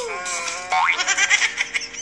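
Cartoon-style comedy sound effects. A pitched tone glides downward at the start, then a quick upward glide leads into a held, warbling pitched tone, with clicks and music underneath.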